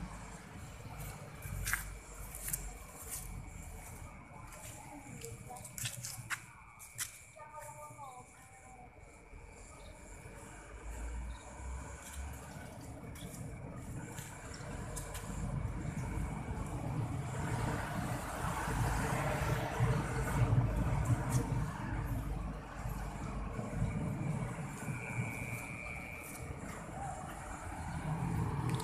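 Road traffic ambience: engines and tyres of passing motorbikes and other vehicles as a low, steady rumble that grows louder from about halfway through and eases near the end, with a few sharp clicks in the first third.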